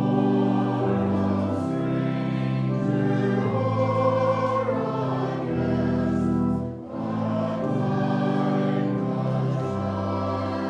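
Voices singing a hymn with organ accompaniment, in long held chords, with a brief break between phrases about seven seconds in.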